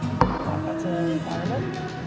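Background music playing, with a single bright clink of glasses tapped together about a quarter-second in.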